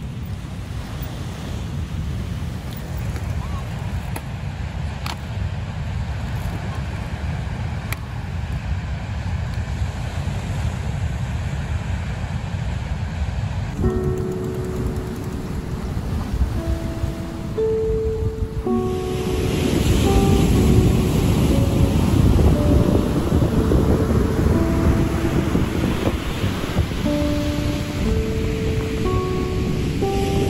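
Wind on the microphone and ocean surf. About halfway through, melodic music with held notes comes in over the surf, which gets louder a few seconds later.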